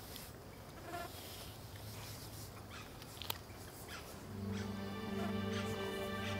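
Faint background ambience, with a short pitched sound about a second in and a sharp click a little after three seconds. Soft background music with sustained low tones comes in about four seconds in and grows louder.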